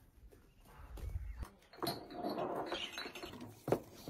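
Chickens in a farmyard calling, the loudest call coming about two seconds in, with a sharp click near the end.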